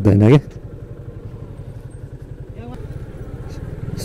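Yamaha motorcycle engine running steadily at low riding speed, a fast even pulsing rumble heard from the rider's seat.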